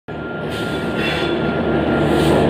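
A train running past: a loud, steady rumble of wheels and coaches with a thin, steady high squeal over it.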